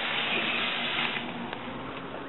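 Steady background noise with a faint hum and a couple of light clicks, slowly getting quieter.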